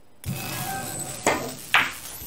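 A pool shot: the cue tip strikes the cue ball about a quarter second in, the ball rolls across the cloth, then two sharp clicks about half a second apart as ball strikes ball and cushion, the second the loudest.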